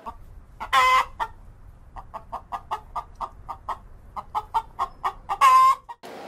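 Hen clucking: a loud drawn-out call about a second in, then a run of quick short clucks, about five a second, and another loud call near the end.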